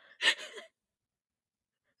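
A single short, breathy gasp of laughter from a woman, about half a second long.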